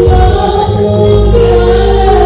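Gospel worship singing: a group of voices through microphones over an electronic keyboard, amplified through a PA, with held notes over a steady bass line.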